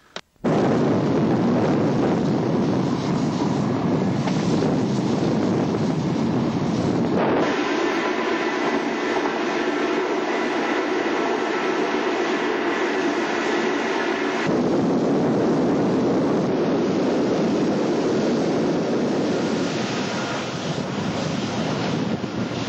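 The Sangritana's Stanga-TIBB electric railcar ALe 09 running at speed: a loud, steady rush of wind and rolling noise that cuts in abruptly just after the start. From about 7 to 14 seconds the noise shifts and faint steady tones run through it.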